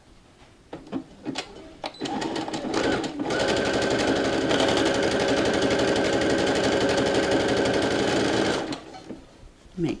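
Electric sewing machine running a zigzag stitch, its needle going rapidly and evenly. It starts slowly about two seconds in, runs at full speed for about five seconds and stops about a second before the end. A few light clicks come before it starts.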